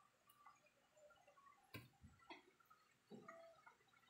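Near silence with a few faint clicks, about three in the second half, from a spoon knocking against a plate while eating rice.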